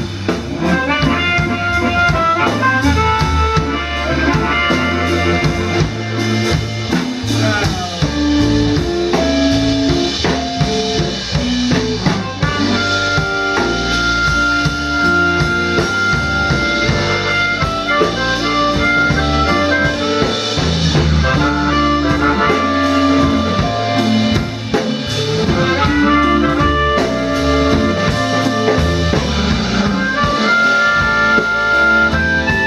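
Live blues band: a cupped harmonica playing a solo of held and bent notes over drum kit, bass and electric guitar, with one long high note held for several seconds midway.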